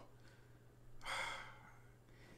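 A man's short audible breath, a sigh about a second in, over a faint steady low hum.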